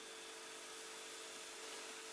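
Faint steady fizzing of baking soda foaming as citric acid solution reacts with it, over a steady low hum.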